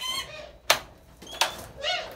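Metal latch on a wooden stall door clicking open: one sharp click under a second in, then a fainter knock about half a second later.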